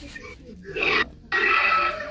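A person's voice coming through a smartphone's speaker on a video call, in two short bursts, the second and longer one starting just over a second in.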